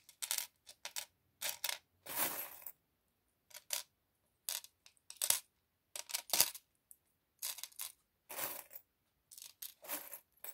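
Small metal charms clinking and jingling against each other and a mirrored tray as they are picked through and moved by hand: irregular clusters of short clinks, with a couple of longer rattles.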